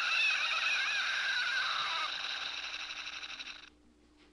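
A high, wavering, voice-like cry from the stick-figure animation's soundtrack, played back over a steady hiss; it fades a little and then cuts off suddenly near the end.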